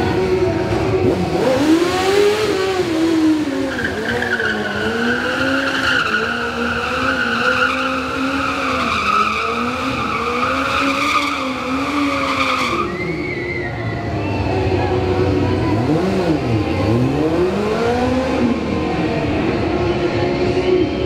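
Yamaha sport bike engine revving up and down over and over during a stunt run, with a tyre squealing in a long skid for several seconds that cuts off suddenly about two-thirds of the way through; the engine keeps revving after it.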